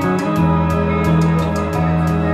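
Live instrumental music: electric guitar holding sustained chords over a steady ticking beat of about five ticks a second, with the bass moving to a new note shortly after the start.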